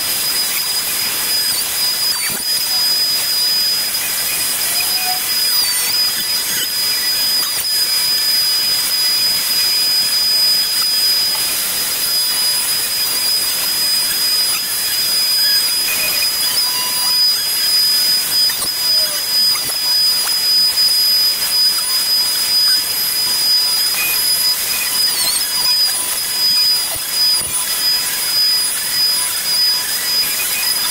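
Compact router running at full speed with a steady high whine as it cuts a circle through a board on a circle-cutting jig, with hiss from the dust-extraction hose on its base. The whine sags briefly a few times as the bit takes more load.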